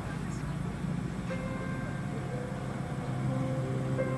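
Steady low outdoor background rumble, with soft piano background music coming in about a second in and swelling near the end.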